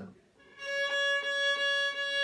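A violin bowed on one long, steady note beginning about half a second in. A left-hand finger is stopping the string, which gives a new note above the open string, one of the notes of the A major scale.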